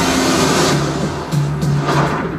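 Animated-film trailer soundtrack: dramatic score with a rushing whoosh effect in the first moments, then a low held note coming in about halfway through.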